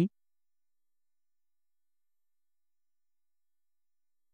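Silence, with only the end of a spoken word at the very start.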